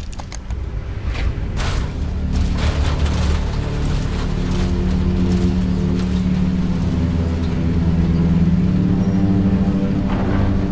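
Dramatic film score building with sustained low notes that grow louder. Several sharp mechanical hits and booms sound over it in the first few seconds.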